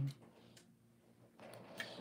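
Fine 22-gauge black craft wire being wound by hand around a wire frame: faint rubbing of wire with a couple of small ticks near the end.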